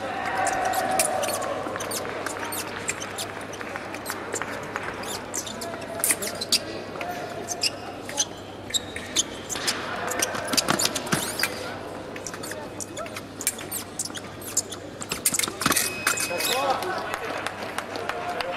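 Foil fencers' footwork on the piste: sharp stamps, shoe squeaks and clicks of blades meeting, repeated throughout. About three-quarters of the way in, the electric scoring apparatus sounds a short steady tone as a touch registers.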